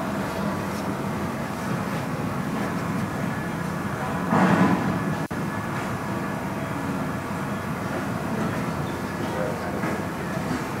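Steady machine hum and background noise, with one brief louder noisy swell about four seconds in.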